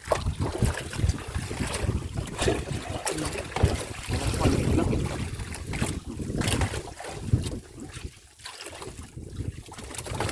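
Wind buffeting the microphone in irregular gusts, over water lapping against a bamboo-outrigger fishing boat on choppy sea.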